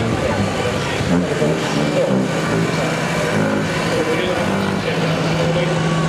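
Engines of a farm tractor and then a water tanker truck driving along a sandy track, with the truck's steady engine hum growing in from about four and a half seconds in. Voices in the background.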